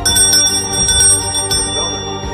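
Polished metal hand bell shaken and rung rapidly, several quick strikes over about a second and a half, its bright high tones ringing on afterwards over background music.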